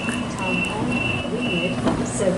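Series 1 Waratah electric passenger train at the platform, giving a steady low hum with a high tone that sounds on and off three or four times.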